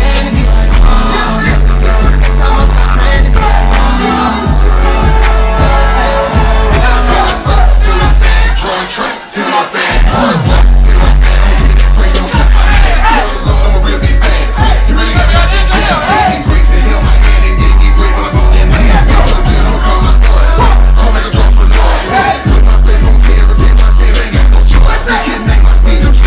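Live trap performance over a loud PA: a heavy bass-driven beat with rapping into microphones. The bass cuts out briefly about nine seconds in, then the beat comes back in.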